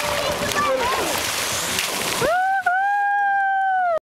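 Sea water splashing and sloshing as men in waist-deep water heave one of them up onto another's shoulders for a jump. A little over two seconds in, the splashing stops and a long held shout or yell begins, breaking once briefly.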